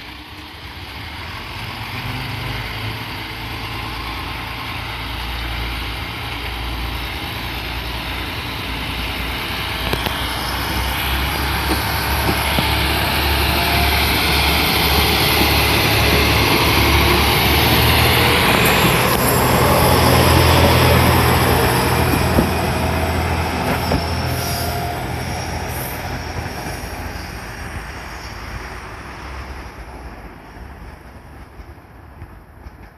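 Moka 14 diesel railcars running past at close range: an engine drone under wheel-and-rail rumble grows steadily louder, peaks a little past the middle, then fades as the cars move away, with a few sharp clicks from the wheels on the track near the end.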